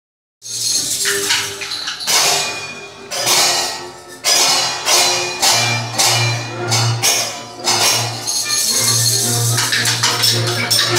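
Hand percussion, tambourines and shakers, played by young children to music. Strong hits land roughly once a second, and a steady low note enters about halfway through.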